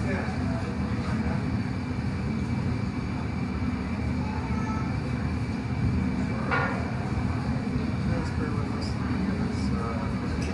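Steady low roar of a gas-fired glassblowing furnace with its door open, with a faint murmur of voices over it. One short sharp sound about six and a half seconds in.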